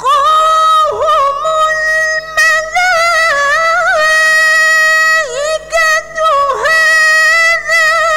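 A woman reciting the Quran in melodic tarannum style, solo and loud. A phrase starts right at the beginning and runs as long, high, held notes with wavering ornamental turns and a few quick dips in pitch.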